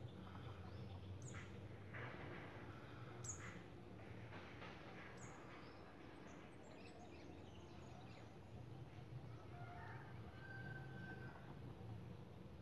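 Faint outdoor ambience: birds chirping now and then with short, high calls, over a low steady hum.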